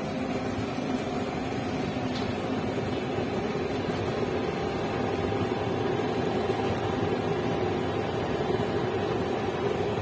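Steady rushing hum of a gas-fired satay grill's burner running under the rack, even throughout.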